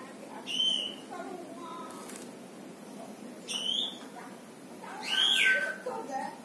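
Female black-naped monarch (kehicap ranting) giving three loud, short, sharp calls: one about half a second in, one around three and a half seconds, and one near the end, with fainter chirps between.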